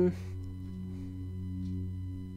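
Soft background ambient music: a steady drone of several held tones that gently swell and fade.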